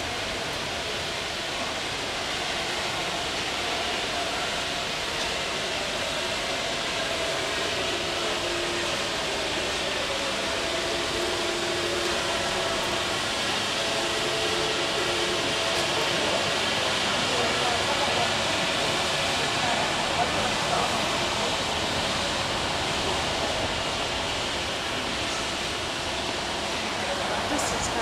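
Steady outdoor street ambience: an even background hiss with faint voices in it.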